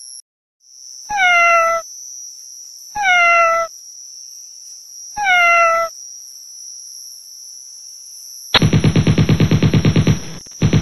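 Night ambience: a steady high insect chirring, with three short meow-like animal calls about two seconds apart, each falling in pitch. About eight and a half seconds in, a loud rhythmic rattling buzz starts, at about ten pulses a second.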